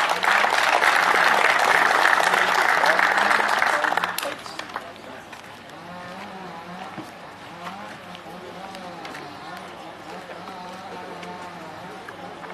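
Audience applauding for about four seconds, then dying away to faint background talk.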